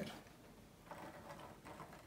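Faint scratching of a graphite pencil drawing a line on watercolour paper, barely above room tone.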